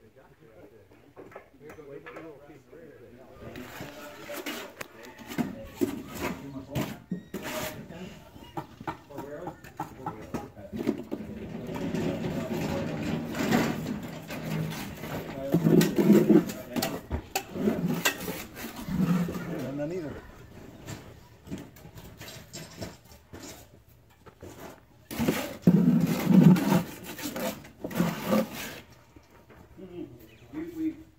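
People talking, with scattered sharp knocks and clatter.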